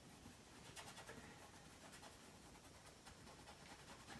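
Near silence with the faint scratch of a paintbrush laying oil paint onto a linen canvas, a few soft strokes heard about a second in.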